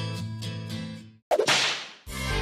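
A country song with guitar fades out. About a second and a quarter in, a sudden whoosh transition effect cuts in and dies away over about half a second.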